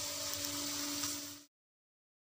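Wood fire burning in a clay cooking stove with a steady hiss and a faint hum, cutting off suddenly a little over a second in.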